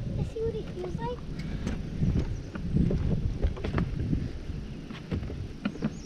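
Low, uneven rumble of wind and handling noise on a fishing boat, with scattered light knocks and clicks and a few brief, indistinct voice sounds near the start.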